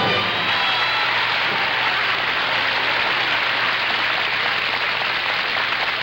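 Studio audience applauding steadily as the last held note of the music dies away in the first second.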